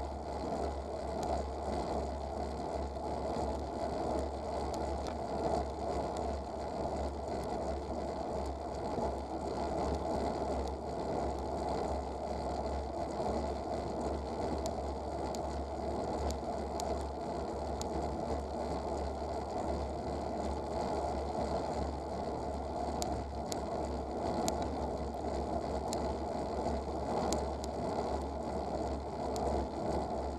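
Riding noise picked up by a bicycle-mounted rear-facing camera: wind rushing over the microphone and road rumble through the frame, steady, with scattered small clicks and rattles that come more often in the second half.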